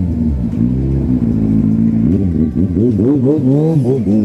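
Kawasaki Z800's inline-four engine held at steady revs, then from about halfway rising and falling quickly in a string of short throttle blips.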